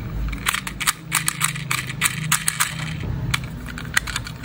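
Small hard plastic toy school bus handled in the fingers: a quick irregular run of sharp clicks and taps, with a low steady hum underneath.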